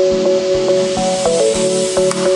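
Electronic background music with a steady beat and held synth notes that step between pitches, and a hiss swelling near the end.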